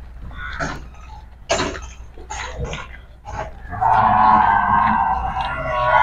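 Murrah buffalo lowing: one long, loud call of about three seconds, beginning about four seconds in.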